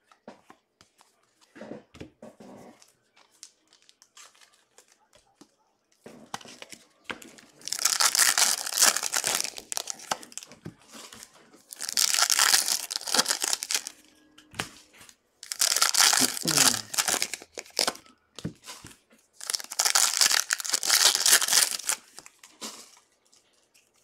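Foil trading-card pack wrappers being torn open and crinkled by hand, in four long bursts of crackling a few seconds apart, with quieter handling rustles between them.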